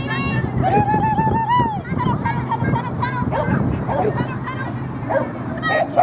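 Dogs barking repeatedly in short, high, excited barks over raised human voices.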